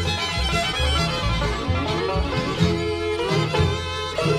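Bluegrass band playing an instrumental passage led by fiddle, over a steady pulsing bass and rhythm.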